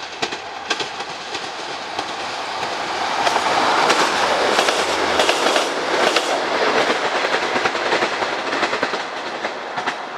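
Class 156 diesel multiple unit passing close beneath, its wheels clicking over the rail joints and junction points. It grows loudest a few seconds in, then slowly fades as it runs away.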